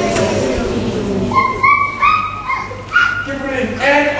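Congregation reading a Bible verse aloud together, many voices blurred in a large hall. After about a second this gives way to several short, high-pitched cries.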